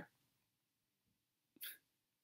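Near silence: room tone, with one short breath drawn in through the mouth about a second and a half in.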